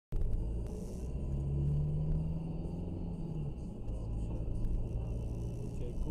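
Car engine and road noise heard from inside the moving car's cabin: a steady low rumble, with the engine note rising in strength for a couple of seconds as the car pulls away, then easing off.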